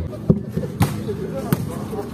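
A volleyball being struck or bounced, three sharp thuds over about a second and a half, with voices in the background.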